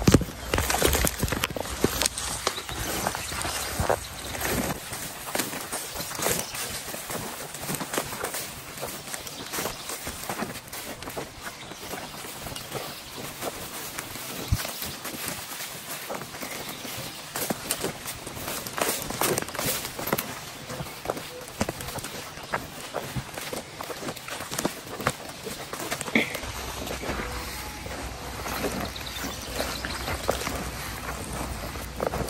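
Footsteps of people walking through tall dry grass and brush, with a steady crackle and rustle of stalks underfoot and against clothing. There is one sharp knock just at the start.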